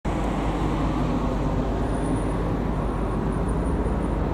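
City street traffic noise: a steady hum of cars on the road.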